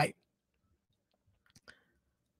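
A man says "right" at the start, then near silence with a few faint short clicks about one and a half seconds in.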